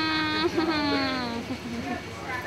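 A person's high, drawn-out voice, held for about a second and a half and sliding slightly down in pitch, with no clear words.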